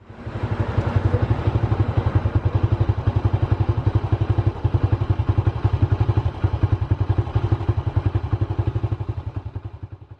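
Honda Super Cub's single-cylinder four-stroke engine idling through a slash-cut muffler, a steady rapid putter of exhaust pulses. It starts abruptly and fades away at the end.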